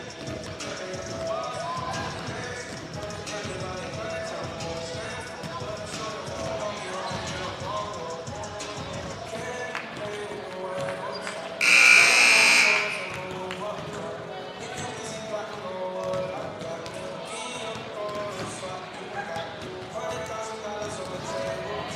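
Basketballs bouncing on a hardwood gym floor during halftime warmups, with music playing over the arena speakers. About twelve seconds in, a loud buzzer sounds for about a second.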